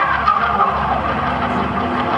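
Overdriven Hammond organ playing loud sustained, wavering notes in the solo organ opening of the song, recorded live from the audience.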